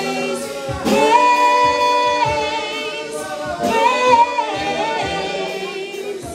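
Gospel worship song: voices singing long held notes with vibrato over keyboard accompaniment.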